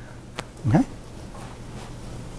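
Quiet classroom room tone with a steady low hum, a single sharp click about half a second in, and a brief spoken 'okay'.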